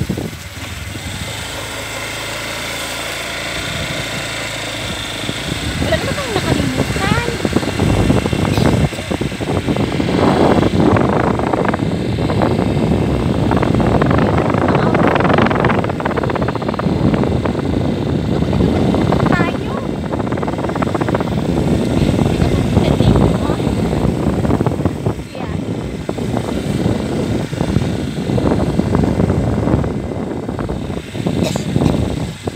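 Loud, rushing wind buffeting the phone's microphone, mixed with the running noise of a moving vehicle; it builds and stays loud after about six seconds.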